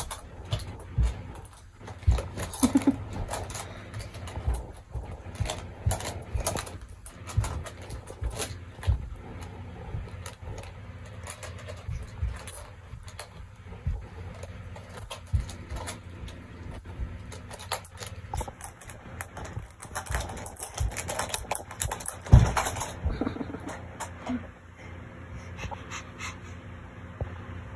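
A young child playing on a bed: irregular thumps and knocks, with a few short wordless vocal noises.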